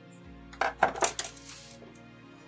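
A few sharp clicks and clatters, with a short scrape, bunched about half a second to a second in, as a homemade screwdriver soldering iron and its cable are handled and laid down on a tabletop. Quiet background music runs underneath.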